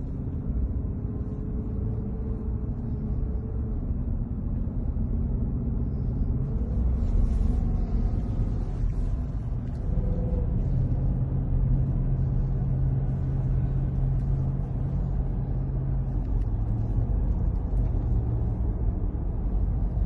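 Steady low rumble of a moving car's engine and tyres heard from inside the cabin, with a slightly stronger low hum from about ten seconds in.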